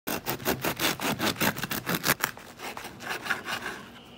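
Bread knife sawing back and forth through the hard, flour-dusted crust of a spelt sourdough loaf: rapid scraping strokes, about six a second, growing softer after about two seconds.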